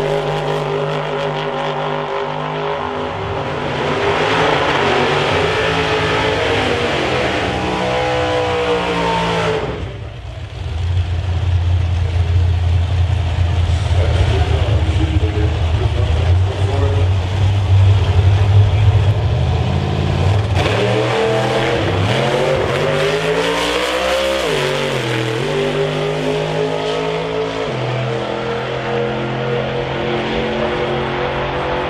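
Outlaw Anglia drag-car engine at full throttle down the strip, rising in pitch. After a short break, another drag car's engine holds a deep steady rumble for about ten seconds, then revs up in two rising sweeps as it launches and pulls away, with a step in pitch near the end.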